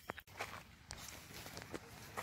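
Faint footsteps on loose stones and rock, heard as scattered crunches and clicks.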